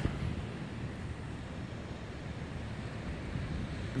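Steady low rumble of wind on the microphone, with no distinct events.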